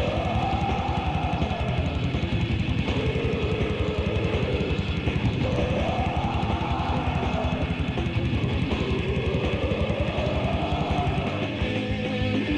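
Death metal band on a demo recording: distorted guitars and fast drumming, with a pitched line rising and falling in slow sweeps every few seconds. Near the end the drums drop out, leaving guitar.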